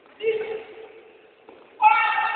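Human shouting: a brief shout a moment in, then a loud, high-pitched yell that breaks out near the end as players collide.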